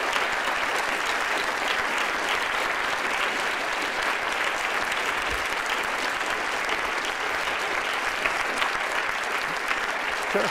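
Audience applauding, a dense, steady clapping of many hands held at an even level.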